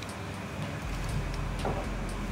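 A hex key turning the bolt in a Rizoma bar-end lever guard to tighten it: a few faint metallic clicks over a steady background hiss.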